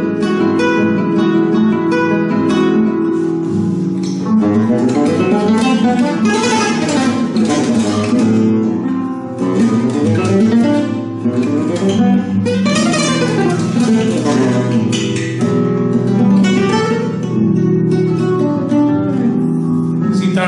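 Flamenco guitar, a Simplicio 1932-model with a double back and double fretboard, being played: chords at first, then several fast scale runs up and down about a third of the way in, and chords again near the end.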